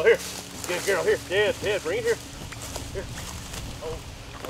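A person's voice calling to a dog in a quick run of short, rising-and-falling syllables for about two seconds, then quieter.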